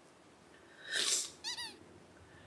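A small pet bird calls: a short harsh squawk about a second in, then a quick run of three or four rising-and-falling chirps.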